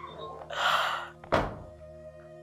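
A woman crying, with one loud breathy sob around the middle and a sudden thump just after it, over background music of sustained tones.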